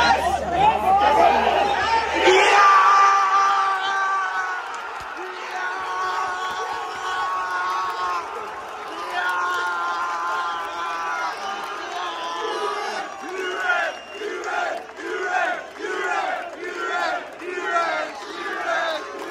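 Football crowd on the terraces cheering loudly, loudest about two seconds in, then singing a chant with long held notes. Near the end it turns to a rhythmic chant of about one and a half beats a second.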